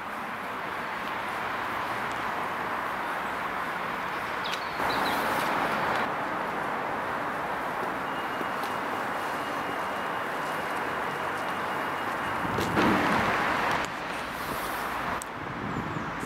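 Road traffic noise: a steady hiss of passing vehicles, swelling louder twice, about five and about thirteen seconds in, as vehicles pass close by.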